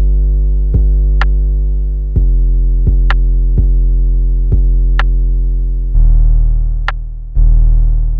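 An 808 bass pattern playing back on its own: long, deep sub-bass notes, each struck hard and then fading, with the pitch stepping down to a lower note about six seconds in. A short, sharp tick sounds about every two seconds.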